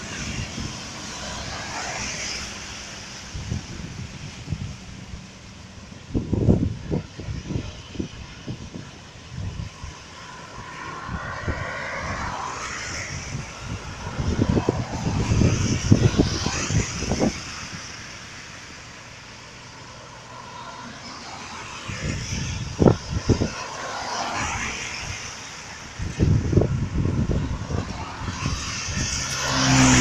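Cars passing one after another on a wet road, tyres hissing through the water. The loudest, closest pass-bys come about six, fifteen, twenty-three and twenty-seven seconds in, with low rumbling buffets on the microphone.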